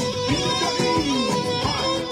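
Live manele band playing an instrumental: held brass notes and melody lines that slide in pitch over a steady drum beat.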